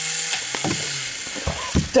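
Geared electric motors of a Combat Creatures toy walking robot whirring steadily, with a few sharp clicks and knocks in the second half.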